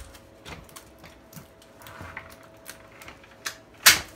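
Steel-frame folding hand truck being unfolded by hand: light clicks and rattles of the frame and its plastic parts, then one sharp, loud click near the end as the handle comes up into position.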